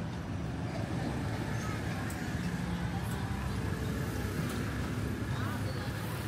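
Busy outdoor street ambience: a steady low rumble of motorbike traffic with people talking in the background.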